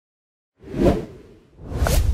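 Whoosh sound effects of an animated logo intro: silence for about half a second, then a whoosh that swells and fades, and a second whoosh building near the end over a deep rumble.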